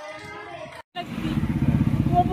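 Faint indoor talk, a brief dropout about a second in, then a loud, steady low rumble with a woman's voice over it.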